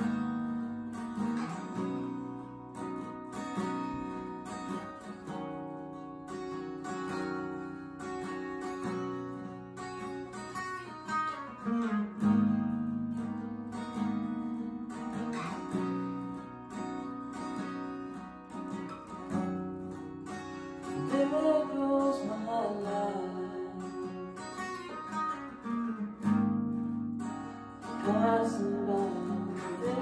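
Capoed Epiphone jumbo acoustic-electric guitar playing a slow, ringing chord progression, each chord struck and left to sustain.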